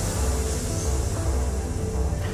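High-pressure air rushing into a submarine's ballast tanks during a three-second emergency blow: a steady hiss that tails off at the end. Background music with a low drone runs underneath.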